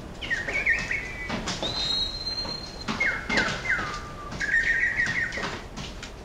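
Bird-like chirps and whistles in the outro of an electronic chillstep/drum-and-bass track, over sparse clicking percussion. There are short falling chirps, a single held whistle about a second and a half in, and a quick trill near the end.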